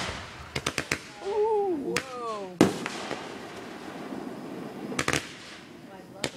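Aerial fireworks going off: a quick run of four sharp cracks, a loud bang a little over two and a half seconds in, and another cluster of cracks about five seconds in.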